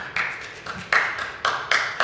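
Papers being handled and gathered up on a wooden lectern close to its microphone: a string of sharp rustles, about two a second.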